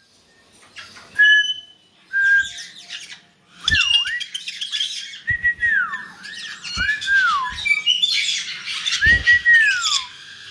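Pet caiques calling: a few short whistles, then from about four seconds in a run of squawks and loud whistles that rise and then fall, busiest near the end.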